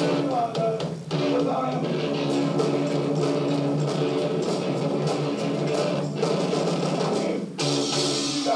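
Rock band playing: electric guitar over a drum beat. The sound briefly drops out about a second in and again near the end.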